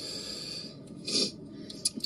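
Breath of a person vaping a disposable vape, heard as a hiss: a long, steady breath, then a shorter, louder one about a second in.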